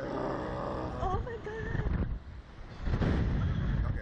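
Wind rushing over the microphone of a swinging slingshot ride capsule, with a rider's voice in the first second; the rushing eases about two seconds in and surges back near the end as the capsule swings again.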